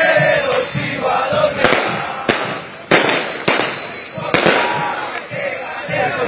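A marching crowd of football supporters chanting, broken by about five sharp firecracker bangs spaced roughly half a second to a second apart between a second and a half and four and a half seconds in.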